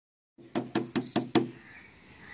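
A hand knocking five times in quick, even succession on the metal side of a railway passenger coach. Each knock rings out briefly.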